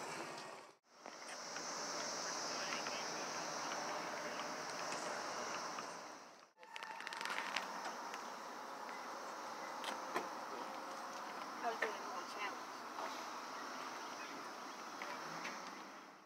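Chorus of Brood X periodical cicadas buzzing in the trees: a steady high-pitched drone. It cuts out briefly near the start and again about six seconds in, and comes back fainter after the second break.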